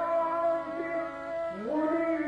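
A male singer holding one long sung note over instrumental accompaniment in a live Marathi devotional song, sliding upward to a new note near the end.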